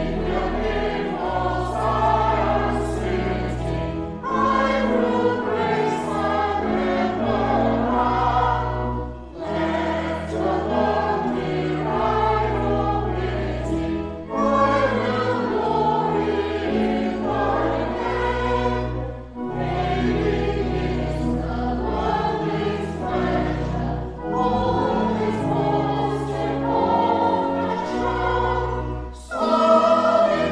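Robed church choir singing in parts, over low held notes that move in steps beneath the voices. The singing comes in phrases of about five seconds, with a short break for breath between each.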